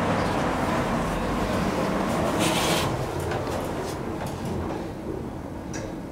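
A ThyssenKrupp elevator's automatic sliding car doors closing, with a short hiss about halfway through and a click near the end as they shut. The background noise of the metro station drops away as the doors close.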